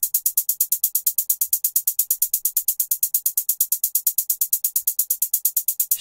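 Programmed trap hi-hat loop: a fast, even run of short hi-hat ticks at about eight or nine a second, panned left and right at random by an auto-panner plugin stepping through random values.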